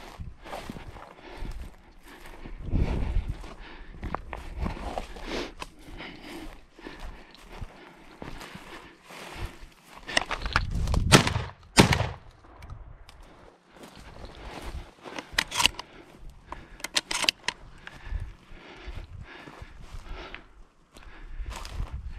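Footsteps crunching and brushing through dry scrub and stones, then two shotgun shots about a second apart, a little past halfway, the loudest sounds here.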